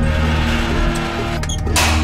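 Dramatic background music with a low sustained drone, and a loud burst of rushing noise near the end.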